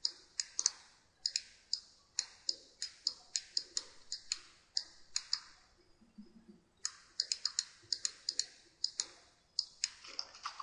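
Computer mouse button clicking repeatedly, sharp and light, about two to three clicks a second with some quick doubles and a short pause a little past halfway, as strokes are dabbed with an eraser brush in Photoshop.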